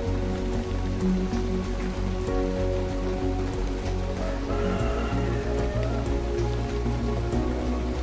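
Steady rain with scattered close drop hits, mixed with slow, calm music of held notes over a low bass.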